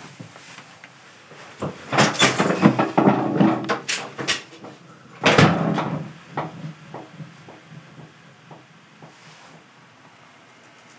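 A door being handled with several clattering knocks, then shut firmly about five seconds in, the loudest sound here. Faint, fading ticks follow.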